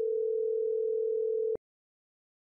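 Ringback tone in a Cisco IP Communicator softphone: one steady two-second ring burst that stops about one and a half seconds in, the sign that the called phone is ringing.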